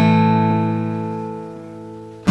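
Background music: a single strummed guitar chord ringing out and slowly fading.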